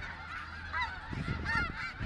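A large flock of snow geese honking, many calls overlapping at once.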